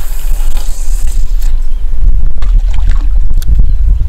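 Strong wind buffeting the microphone: a loud, constant low rumble with a rushing hiss over it.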